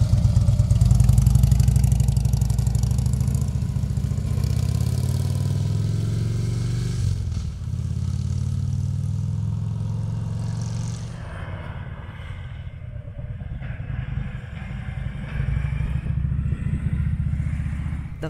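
Touring motorcycle engine accelerating as it pulls away close by, loudest in the first couple of seconds, then heard again farther off, fading and swelling as it rides away through the curves.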